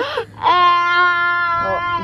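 A young girl's loud voice: a short squeal, then one long, steady held note.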